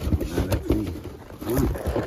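A man's short strained grunts as he pulls at stuck packing tape on a cardboard box, mixed with brief sharp rips and scrapes of tape and cardboard.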